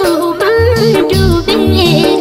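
Nepali lok (folk) song: a high singing voice carries a wavering, ornamented melody over instrumental backing with a bass line.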